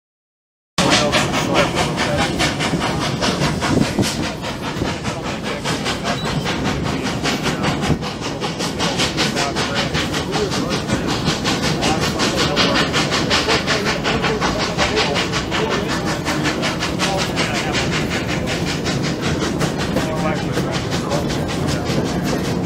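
Three-foot narrow-gauge steam train running, heard from an open car behind the locomotive. It starts suddenly about a second in: a fast, even run of beats over a steady rumble.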